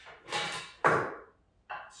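Stainless-steel meat pounder being picked up and handled over a wooden cutting board: two short handling noises, the second a sharp knock a little under a second in, the louder of the two.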